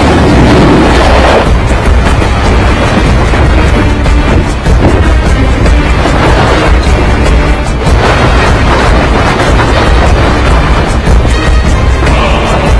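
Loud action-film soundtrack: a music score mixed with booms and a constant deep rumble, swelling at the start and again about six and eight seconds in.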